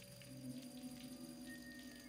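Quiet, low sustained synthesizer drones of a film score, with a higher tone sliding slowly upward in pitch.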